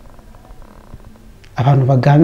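A short pause in speech with only faint background noise and a few small clicks, then a man's voice resumes about a second and a half in, speaking in long, drawn-out tones.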